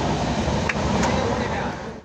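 Steady running noise inside a crowded passenger train coach, heard as an even, dense rush with a rough low clatter.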